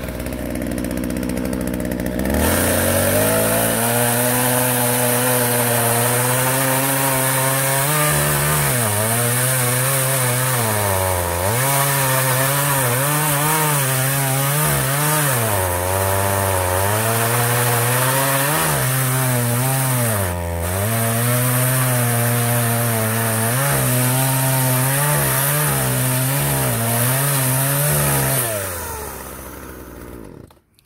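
Partner 351 two-stroke chainsaw revved from idle to full throttle about two seconds in and cutting through a log, on a fairly worn chain. The engine note dips each time the chain bites harder into the wood, then recovers. The throttle is released near the end and the engine winds down.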